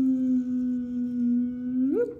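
A man's voice holding one long "ooo" note while drawing, pitch sinking slightly, then sliding quickly upward at the end.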